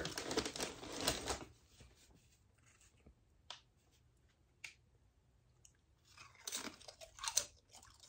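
Rustling of a plastic tortilla-chip bag as a hand reaches in for a chip in the first second or so, then a few quiet seconds with faint clicks, then crunching bites and chewing of the tortilla chip near the end.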